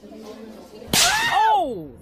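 A comedic sound effect dubbed over the edit: a sharp whip-like swish about a second in, followed by a whistle-like tone that rises briefly and then slides steeply down in pitch, cut off abruptly at the end.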